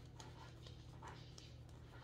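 Faint rustle and soft clicks of a deck of tarot cards being shuffled in the hands, over a steady low hum.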